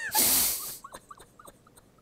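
A sharp, loud rush of breath just after the start, then a few faint, short high squeaks: someone struggling to hold back a laugh.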